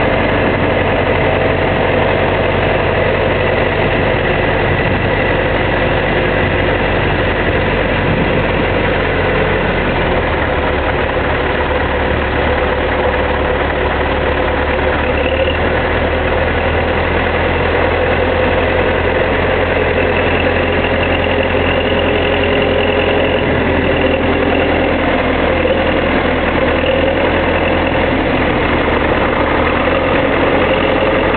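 Diesel engine of a YuMZ backhoe tractor running steadily as the tractor pushes soil with its front dozer blade. The engine note shifts a little about ten seconds in and again around fifteen seconds in.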